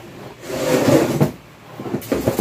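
Rummaging and handling noise: a rustle with small knocks as a pair of high heels is pulled out of storage, loudest about a second in.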